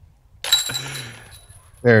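Disc golf disc striking the hanging chains of a metal basket: a sudden metallic jingle about half a second in that rings out and fades over about a second, the sound of a putt going in.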